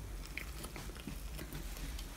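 Faint, wet mouth sounds of marshmallows being stuffed into a full mouth, with small scattered clicks.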